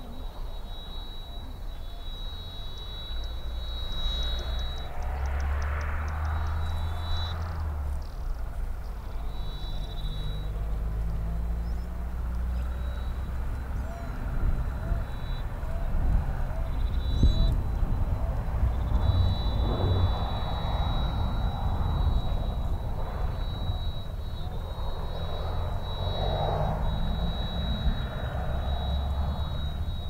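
Outdoor ambience with a steady low rumble, a thin high tone that comes and goes in stretches of several seconds, and faint short chirps near the middle.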